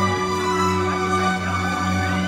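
A string orchestra of violins and cellos playing, with held notes over a steady low bass line.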